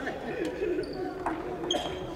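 Badminton rackets striking shuttlecocks in sharp cracks, four in about two seconds across the courts, with sneakers squeaking briefly on the wooden gym floor, in a reverberant sports hall.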